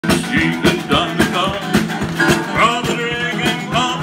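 Live band: a strummed acoustic guitar and a drum kit keeping a steady beat, with a man singing into a microphone.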